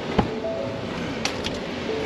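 Pickup truck's driver door being opened from inside: a latch click with a dull thump just after the start, then a few light clicks. Short, steady electronic tones that fit the cab's door-open warning chime sound twice.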